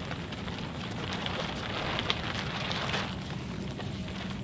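Crackling and rustling of a plastic tarp tent flap as it is pushed aside, with many small clicks, over a steady low hum.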